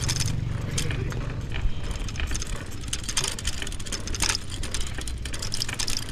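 Bicycle riding over a rough dirt-and-gravel road: a steady rolling noise from the tyres, with many quick clicks and rattles from the bike jolting over the stones.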